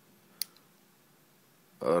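A single sharp click of a push-button switch being pressed on a homemade four-switch panel with red/green indicator lights, against near silence.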